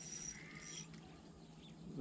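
Quiet outdoor ambience with faint, high-pitched animal chirps in the first second.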